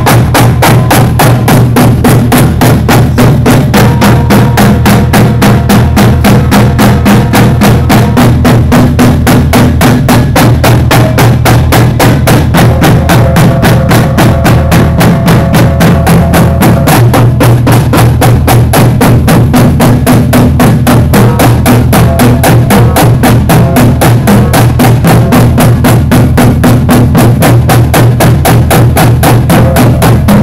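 Marching drumline playing together: rapid, dense stick strokes on snare and tenor drums, with tuned bass drums sounding low pitched notes. It is loud and continuous throughout.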